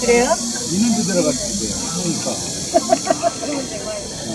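People talking near the microphone, several voices at once, over a steady high-pitched hiss.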